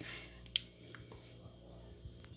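Thick chocolate cake batter sliding out of a glass bowl into a ring cake pan, faint and soft over low room tone, with one sharp click about half a second in and a few fainter ticks.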